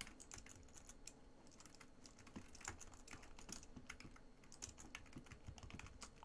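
Quiet typing on a computer keyboard: a run of irregular keystrokes as a short name is typed in.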